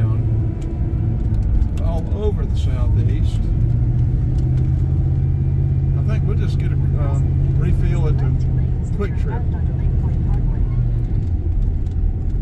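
Car interior drive noise: a steady low engine and road rumble while driving in traffic. The engine hum rises a little in pitch a few seconds in and settles back near the end.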